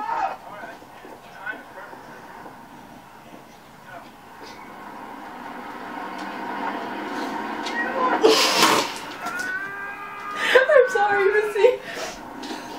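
Faint voices and background sound from a playing video, a short loud burst of noise about eight and a half seconds in, then a high, wavering vocal cry near the end.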